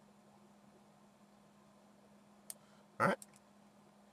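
Near silence: quiet room tone with a faint steady hum, broken about two and a half seconds in by a single sharp click of a computer mouse button.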